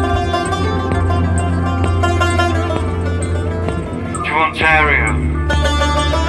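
Live band music: a steady low bass drone under plucked electric guitar and a Central Asian lute, with a short voice passage about four and a half seconds in.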